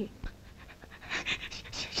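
Breathy, mostly unvoiced laughter in several short puffs, starting about a second in.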